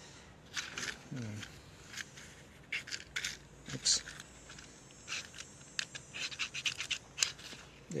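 A waterproof match struck against the side of its matchbox with one hand, making many short scratches over several tries before it catches near the end.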